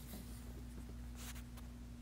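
Quiet room tone: a steady low electrical hum with a faint brief rustle, like a hand moving against the can or clothing, a little over a second in.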